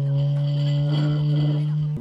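Corded wand massager buzzing with a steady low hum while its head is held down in a bowl of crepe batter, whisking out the lumps.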